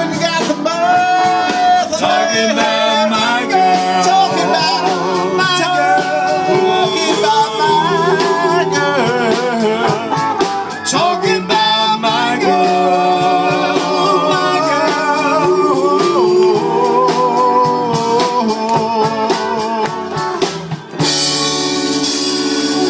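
Live band music: singing over guitar and drums, with a short dip in loudness near the end.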